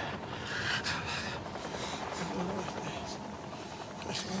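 A badly wounded man's laboured breathing and faint murmured sounds over a steady background hiss.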